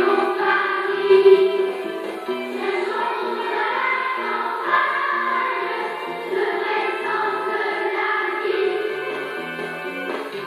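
A large children's choir singing a song with instrumental accompaniment, the low notes of the accompaniment moving step by step under the voices.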